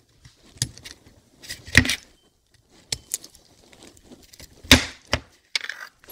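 Steel parts of an AR-15 bolt carrier group clicking and clinking as it is taken apart by hand: about six separate sharp clicks spread out, the loudest near the end.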